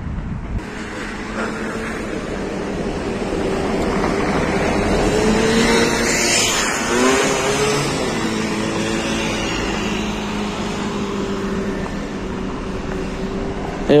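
Street traffic: a car driving past on the road, its engine and tyres growing louder to a peak about halfway through, then fading away.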